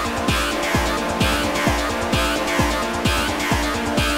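Dark hard-techno track played on synthesizers and drum machine: a steady four-on-the-floor kick drum, about two beats a second, each hit dropping in pitch, under sustained droning synth chords and recurring harsh noisy swells in the highs.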